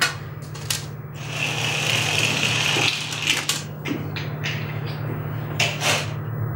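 Small objects handled on a glass tabletop: a series of sharp clicks and taps, with a rustling hiss lasting about a second and a half near the middle, over a steady low hum.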